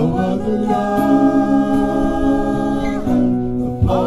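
Acoustic worship music: an acoustic guitar with sung vocals, the voices holding one long note for about two seconds in the middle.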